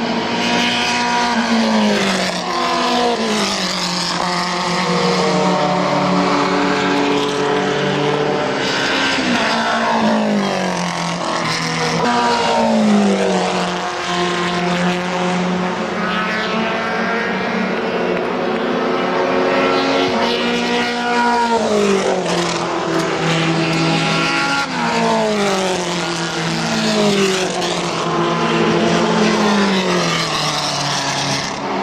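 Open-wheel formula race cars lapping past one after another, several engines overlapping. Their engine notes climb and step through gear changes, then fall in pitch as cars brake and go by.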